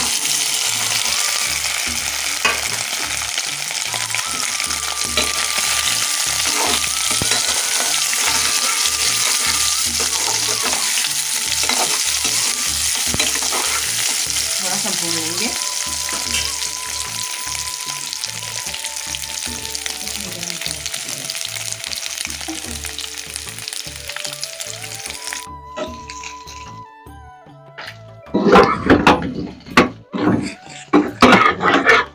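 Boiled baby potatoes frying in very hot oil with cumin seeds in a metal kadai: a steady, loud sizzle that drops away about 25 seconds in. Near the end a metal ladle scrapes and clatters against the pan as the potatoes are stirred.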